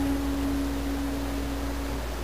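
Acoustic guitar left ringing after a strum: a single sustained note slowly fading, over a low steady hum.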